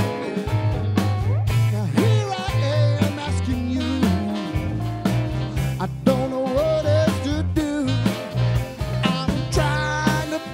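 A brass band playing a funky original tune live: a sousaphone bass line, trumpet, tenor saxophone and trombone over electric guitar and a drum kit keeping a steady beat.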